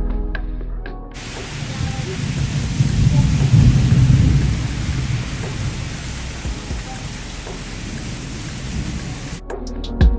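Heavy rain falling steadily with a long low roll of thunder that swells to its loudest a few seconds in and slowly dies away. The rain starts abruptly about a second in and cuts off shortly before the end.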